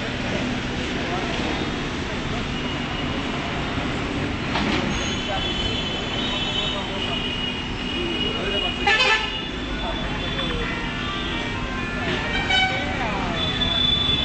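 Street traffic running steadily, with vehicle horns tooting repeatedly through the second half and a louder sudden sound about nine seconds in. Voices can be heard in the background.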